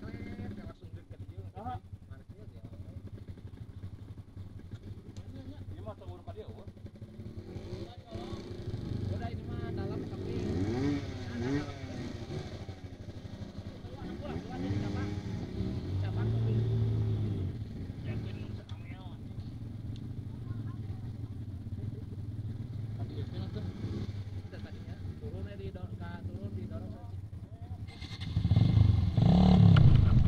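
Dirt bike engines idling with a steady low hum, the revs rising and falling several times in the middle as bikes are ridden up the trail.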